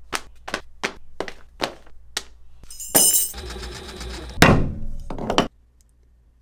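Leatherworking handling sounds: a quick even run of sharp knocks, about three a second, then a ringing metallic clink about three seconds in and two heavier thuds. The sound cuts off suddenly near the end.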